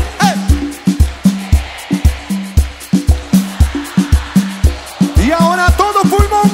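Live cumbia band music with a steady, driving beat of bass and drum hits, about two and a half a second. A melodic line rises back in over the beat about five seconds in.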